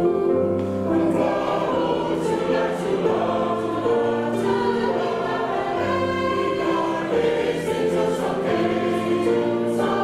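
Mixed choir of men's and women's voices singing a traditional South African song in full harmony, with sustained chords whose low notes shift every second or two.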